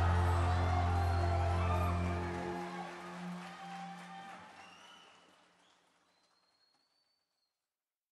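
A live band's final held chord ringing out and fading away over about five seconds, with an audience clapping under it.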